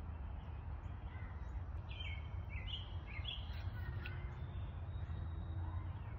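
Outdoor ambience with a steady low rumble, and a bird giving a quick run of about five short high chirps about two seconds in.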